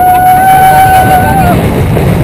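A woman riding a giant swing ride screaming: one long, high scream held at a steady pitch, ending about a second and a half in. Wind rushes heavily over the rider-mounted camera's microphone.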